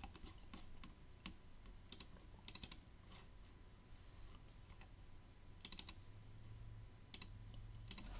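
Faint clicking of a computer keyboard being typed on, in a few short runs of keystrokes with single clicks in between.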